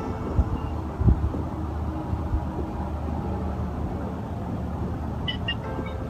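Steady low rumble of background noise, like a running vehicle, with a few soft low thumps.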